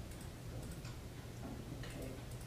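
A few faint, irregular clicks of a computer mouse being clicked and scrolled, over a steady low hum.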